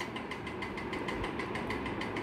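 A machine running steadily in the background with a fast, even pulse.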